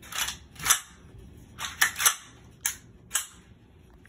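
An AR-style pistol being handled by hand: a series of about seven sharp metallic clicks and clacks from its parts and magazine.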